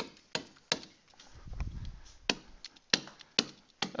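Stylus tapping and clicking against a writing surface while handwriting, about ten sharp, irregular clicks, with a faint low rumble about a second in.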